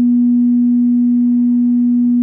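PA sound system feedback: a loud, steady low tone ringing through the speakers, with fainter overtones above it.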